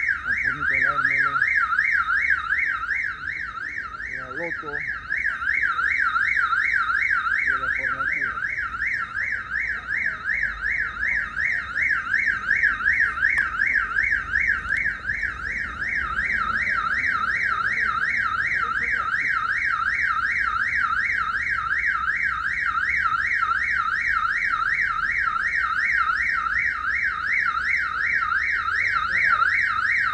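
An electronic alarm siren sounds without a break, one loud tone that warbles quickly up and down.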